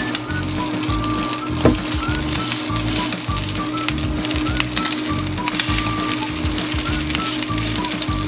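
Background music with a steady beat over cooked rice frying in oil and garlic in a non-stick pan, a faint sizzle and crackle as it is stirred and broken up with a wooden spoon.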